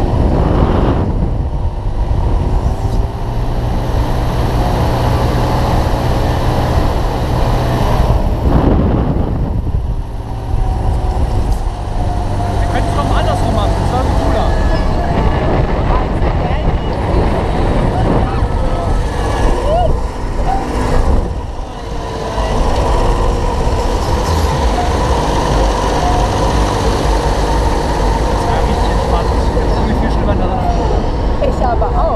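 Mondial Turbine thrill ride in full motion, heard from the rider's seat: a steady machine hum from the ride's drive under rushing air, swelling and dipping a few times as the arm swings around.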